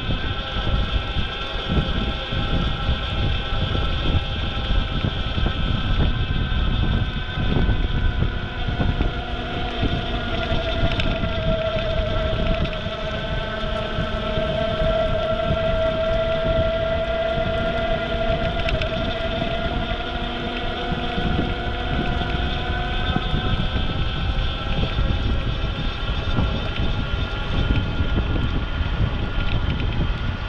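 Wind rushing over a bike-mounted GoPro's microphone while riding, with a steady whine of several pitches underneath that drifts slowly in pitch and is strongest in the middle.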